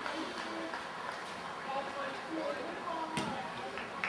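Faint spectator chatter, then a single sharp thud about three seconds in: a boot striking a rugby ball off the kicking tee for a place kick.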